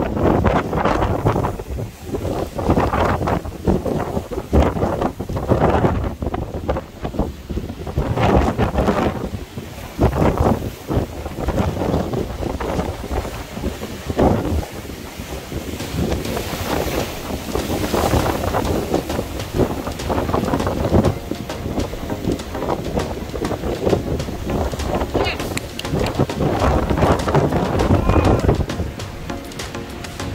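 Wind buffeting the microphone in uneven gusts, over surf washing and breaking among shore rocks.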